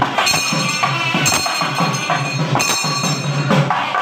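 Loud traditional South Indian temple procession music, led by drums beaten in a steady rhythm, with ringing high tones recurring about every second.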